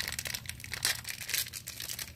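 Crinkly plastic foil wrapper of a Pikmi Pops Surprise toy being opened and handled: a rapid, irregular crackling.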